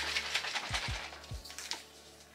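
Close dry crackling and rustling of hair as fingers handle a loc, with a few soft low bumps in the middle.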